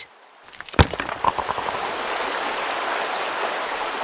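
Sound effect of a pickaxe striking rock once, followed by a few small knocks. Then water gushes out steadily and slowly fades.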